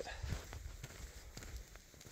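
Faint footsteps of a hiker walking on a trail, a few soft thuds and light ticks of gear.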